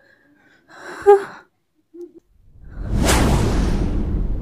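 A short, sharp gasp about a second in. Near the end, a loud rush of noise swells up quickly and lingers, like a dramatic whoosh-and-boom film sound effect.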